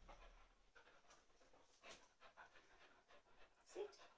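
Near silence: faint sounds of a pet dog moving about and panting softly, with a slightly louder short sound near the end.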